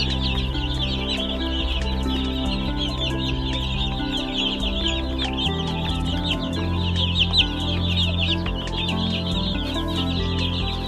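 A large crowd of baby chicks peeping continuously: many short, high, falling chirps overlapping into one dense chorus, with background music underneath.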